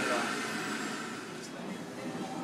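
Centrifugal juicer's motor spinning down after being switched off, its steady whir fading over about a second and a half.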